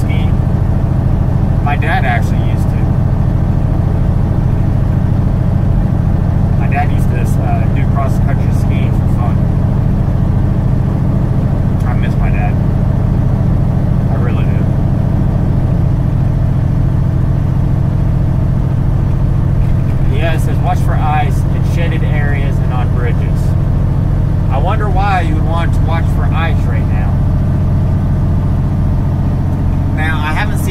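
Semi truck's diesel engine running steadily at highway speed, heard from inside the cab as a continuous low drone.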